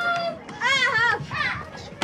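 A young child's high-pitched voice without clear words: a short held note at the start, then a wavering, sing-song call for about half a second.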